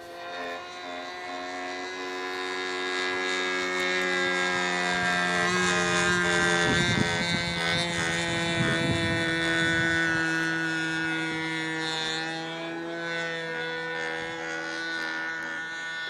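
The 10 cc petrol engine of a radio-controlled model Beagle B121 running steadily in flight. Its drone grows louder towards the middle as the plane comes closer, then fades a little as it moves away.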